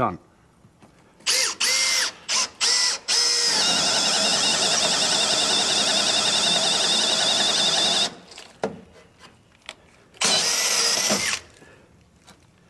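Cordless drill boring into a wooden stud with a one-inch self-feed bit. It starts with a few short bursts, then runs steadily for about five seconds with a high motor whine as the bit cuts. Another short burst of the drill comes near the end.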